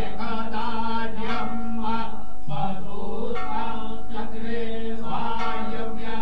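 Devotional chanting in phrases by a voice over a steady sustained drone.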